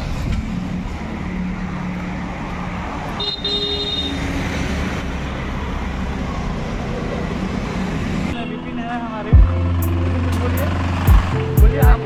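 Road traffic going past, with a short vehicle horn toot about three seconds in. About eight seconds in it cuts to music with a deep steady bass and heavy beat thumps, with a voice over it.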